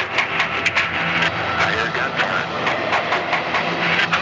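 Archival 911 call recording from the start of the February 1993 ATF raid on the Branch Davidians, played back: indistinct voices on the call line under a heavy, noisy hiss, with many sharp clicks.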